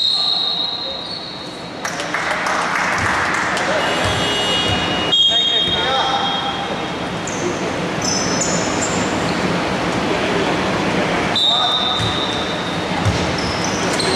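Live sound of an indoor basketball game in a large, echoing hall: a ball bouncing on the wooden court and players' voices over a busy background. Short high squeaks come near the start, about five seconds in, and again about eleven seconds in.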